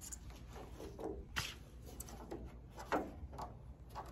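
Bubble-wrapped plastic roof trim handled against a car roof: faint rustling with a few light ticks and taps.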